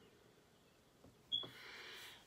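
A person breathing out through the nose: a short high squeak about a second and a half in, then a soft hiss to the end, in a quiet room.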